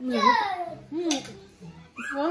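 Mostly a person's voice: short high-pitched vocal sounds that slide up and down in pitch, loudest right at the start, with a brief hiss about a second in.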